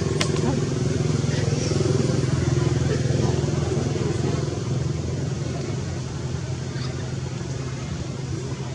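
A motor engine running steadily, a little louder a couple of seconds in, then slowly fading.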